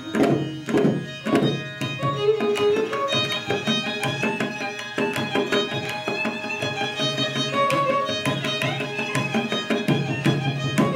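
Carnatic violin playing melodic phrases, accompanied by mridangam strokes. A quick cluster of drum strokes opens it, and the violin line comes to the fore from about three seconds in.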